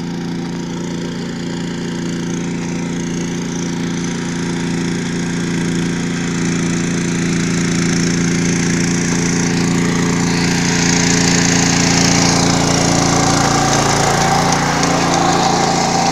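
Riding rice transplanter's small engine running at a steady speed, growing gradually louder as the machine comes closer.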